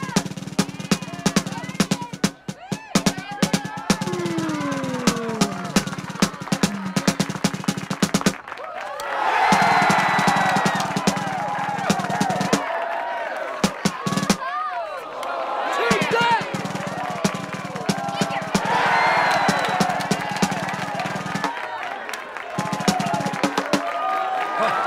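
Marching snare drum played in fast rolls and rapid strokes for about the first eight seconds, over a steady low drone. After that, a crowd shouts and cheers in waves, with scattered drum hits.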